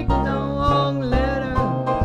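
Live small jazz combo with upright bass and drums playing a swing tune, the bass moving through steady low notes.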